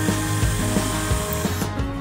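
Cordless drill running for about a second and a half, driving into the coop's wooden frame, then stopping; background music with a steady beat plays throughout.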